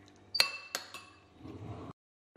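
A metal spoon clinking against a ceramic soup bowl: three sharp, ringing clinks within about a second, the first the loudest, followed by a faint handling rustle before the sound cuts off.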